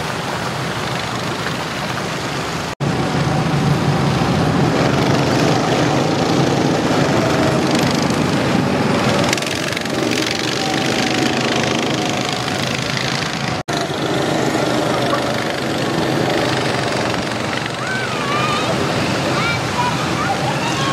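Running water splashing from a pool fountain, then after an abrupt cut a louder stretch of go-kart engines running on a track, a steady small-engine drone with shifting pitch, then after another cut back to pool-side water and voices.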